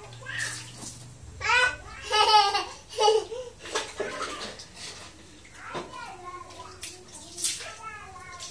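Water splashing and pouring from a plastic dipper onto a tiled bathroom floor, in a small echoing room, with a young child's voice calling out in between.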